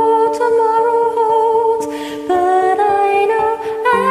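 A woman's voice singing long, drawn-out wordless notes with vibrato over a karaoke backing track of sustained chords; the melody drops about halfway through, then steps back up.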